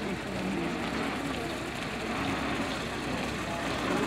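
GAZ-67B jeep's four-cylinder engine running at low speed as the vehicle rolls slowly forward, mixed with the voices of people nearby.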